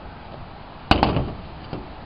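A single sharp knock about a second in, with a smaller click right after, as a heavy metal crankshaft pulley is set down on a concrete floor. Low background noise otherwise.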